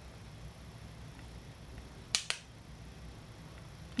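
Quiet room tone with a low hum, broken by two quick sharp clicks close together a little past two seconds in.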